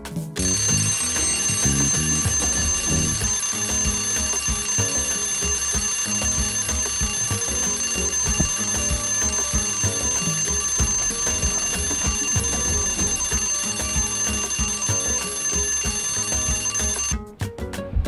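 An alarm ringing with a steady high-pitched tone over background music, starting just after the beginning and cutting off suddenly near the end.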